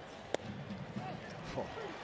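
A single sharp pop of a pitched baseball smacking into the catcher's leather mitt, over the steady noise of the ballpark crowd.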